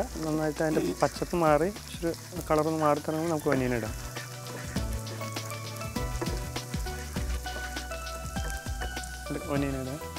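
Minced garlic sizzling in butter and olive oil in a pan, stirred with a wooden spatula, with a steady crackle.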